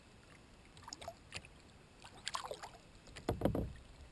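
Kayak paddle strokes in lake water: short splashes and drips about once a second, with a louder stroke and a low thump near the end.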